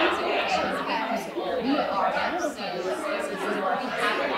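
Indistinct talk of several women's voices overlapping, chatter in a large hall.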